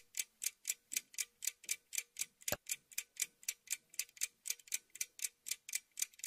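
A fast, even ticking sound effect, about four ticks a second, with one louder, deeper click about two and a half seconds in.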